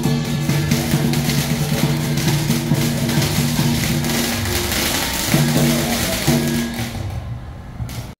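Chinese traditional instrumental ensemble (guoyue) playing a melody of held, stepping notes, loud and steady, fading out near the end.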